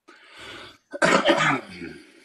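A person coughing over the call microphone: a soft breathy sound, then a louder rough one about a second in.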